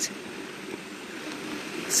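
Steady outdoor background noise, an even low rush with no distinct event in it.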